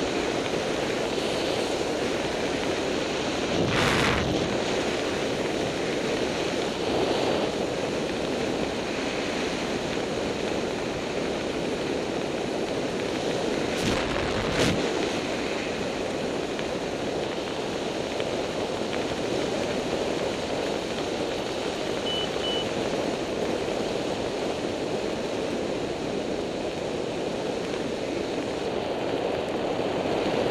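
Steady wind rushing over a helmet camera's microphone while descending under an open parachute canopy, with a few brief knocks about four seconds in and around the middle.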